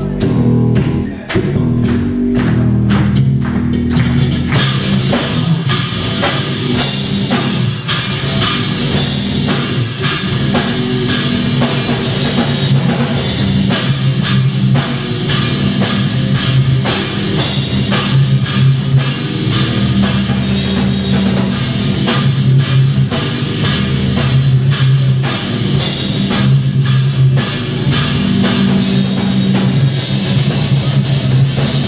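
Heavy metal band playing live, heard from the crowd: drum kit and distorted electric guitars at full volume. The hits are spaced out at first, and the playing turns dense and driving about four seconds in.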